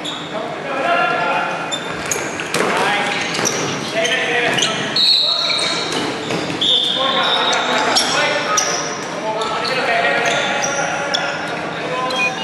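Dodgeball game in a large, echoing sports hall: players shouting and calling to each other, with foam balls thudding on bodies and the wooden floor. Two brief high squeals cut through midway.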